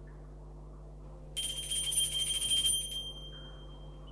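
Altar bells shaken in a rapid ringing burst for about a second and a half, starting just over a second in, then one high tone ringing on and fading away: the bell signal for the elevation of the consecrated host.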